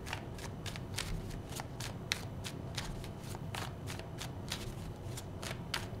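A tarot deck being shuffled by hand, overhand, as cards are slid from one hand into the other: a quiet, irregular run of soft card flicks, several a second.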